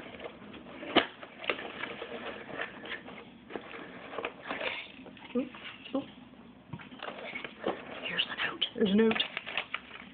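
Cardboard box and paper packaging being opened by hand: scattered rustling, crinkling and light taps, with one sharp knock about a second in.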